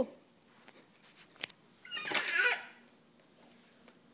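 A short high-pitched squeal about two seconds in, after a faint click.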